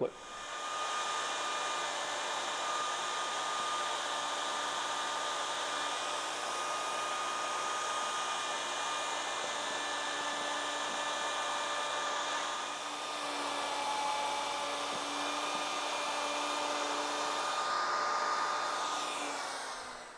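Handheld router with a template-following pattern bit cutting through a mahogany tabletop, the motor running with a steady high whine over the noise of the cut. The sound dips briefly about two-thirds of the way through, then carries on and fades out near the end.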